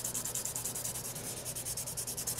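A nail buffing block rubbed quickly back and forth over long gel nail tips in fast, even scratchy strokes, taking the surface shine off the cured gel.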